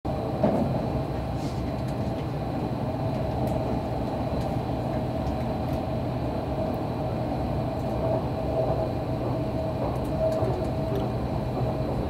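Running noise inside the passenger car of an Odakyu Romancecar limited express travelling at speed: a steady rumble of wheels on rail with a steady humming tone over it and a few faint clicks.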